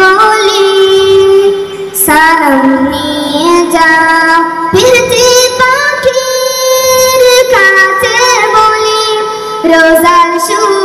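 A group of boys singing together into microphones, with long held notes that waver and slide between phrases.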